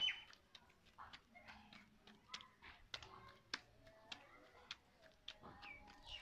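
Very quiet outdoor background with faint bird chirps and a few scattered light clicks.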